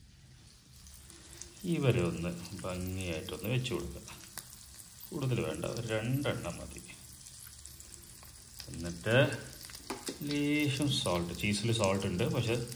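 Bread topped with cheese frying in butter in a nonstick pan, a low steady sizzle. A man's voice comes over it in several short stretches.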